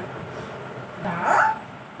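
A toddler's single short, high-pitched whimper about a second in.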